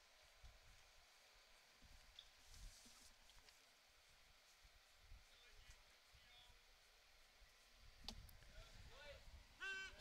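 Near silence: faint outdoor ballpark ambience. About eight seconds in, a single sharp pop, a pitched baseball smacking into the catcher's mitt for a called strike.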